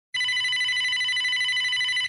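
Telephone ringing: one continuous electronic trilling ring that cuts off suddenly as the call is answered.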